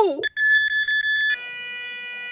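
Electronic tone sound effect: a high steady beep for about a second, then a switch to a lower, buzzy continuous tone that holds on, a flatline-style sound marking a character's 'death'.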